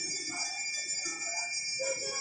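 Temple bells ringing in a steady, high overlapping ring, with faint crowd voices underneath.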